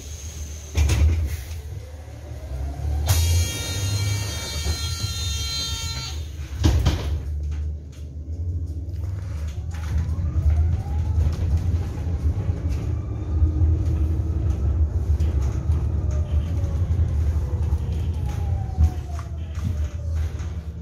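Low-floor electric city bus heard from inside the cabin: a steady low road rumble, with the electric drive motor's whine gliding up and down in pitch as the bus speeds up and slows. An electronic warning tone sounds for about three seconds early on, followed by a single sharp knock.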